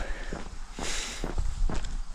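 Footsteps walking along an asphalt road shoulder.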